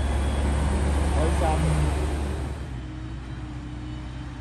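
Claas self-propelled forage harvester's engine running as it drives past, a deep steady hum. It gets quieter about two and a half seconds in as the machine moves away.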